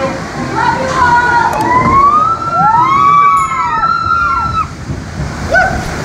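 Log flume boat running through water, with sloshing and rushing water. About one and a half seconds in, several overlapping siren-like wailing tones rise and fall together for about three seconds.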